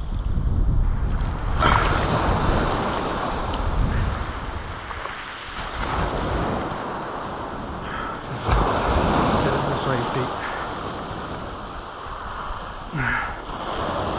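Waves washing up over sand and shingle at the water's edge, surging in at the start and again about eight seconds in, with wind on the microphone.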